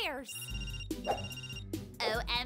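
Telephone ringtone: two short electronic rings, each about half a second long, over background music.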